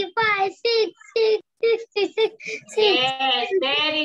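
A child reciting numbers aloud in a sing-song chant, one short syllable after another. A lower adult voice joins in near the end.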